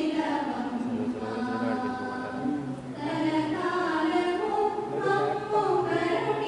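A group of voices singing a slow devotional song together, with long held notes that glide from one pitch to the next.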